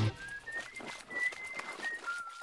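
Quiet cartoon sound track: a thin, high whistle-like tune that steps up and then back down in pitch, over light scattered ticks.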